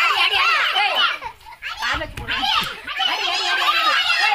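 Children's voices shouting and chattering over one another, with a short lull about a second and a half in.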